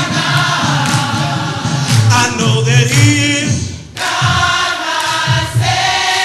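Gospel choir singing in church, many voices together, with a short pause in the sound a little past the middle before the singing resumes.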